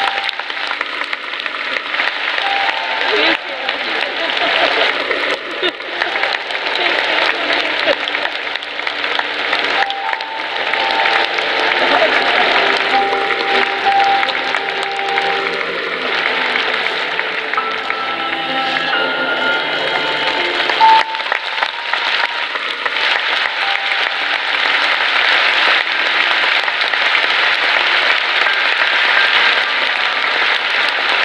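A large crowd applauding steadily, with music playing.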